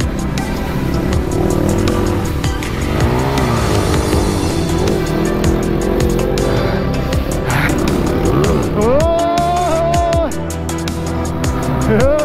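Dirt bike engines revving up and down as the bikes climb a loose dirt trail, with one strong rev rising and holding about nine seconds in before dropping off. Background music with a steady beat plays throughout.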